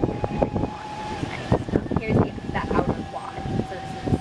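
Golf cart driving slowly along a paved path: rumbling ride noise with a steady thin whine that drops out for a couple of seconds mid-way and comes back, under low talk.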